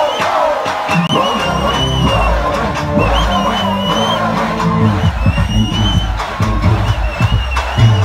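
Loud music with a heavy bass beat played over a concert sound system, with a large crowd cheering.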